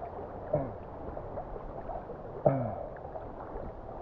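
River water sloshing and gurgling around a camera held at the surface, with two short sounds that drop steeply in pitch, about half a second in and again about two and a half seconds in, the second starting sharply and louder.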